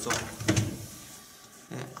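Knocks and scuffing on a wooden board as a rabbit moves across it and is taken in hand, loudest in the first half second, then fading.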